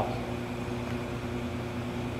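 Steady hum of a running glove box's blowers and equipment: a low, even drone with a few steady low tones.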